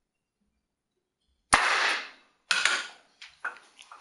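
Methanol vapour igniting inside a plastic film canister, set off by a piezo igniter: a sharp bang about a second and a half in as the cap blows off, with a short rushing tail. A second loud burst follows about a second later, then a few fainter knocks.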